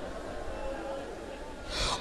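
A pause in a man's speech with faint room background. Near the end he takes a sharp breath into the microphone just before speaking again.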